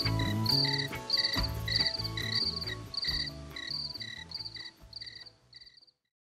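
Cricket chirps repeating about twice a second over the bass and chords of a song's closing bars. The music fades down and stops just before the end, with the chirps continuing almost to the cut-off.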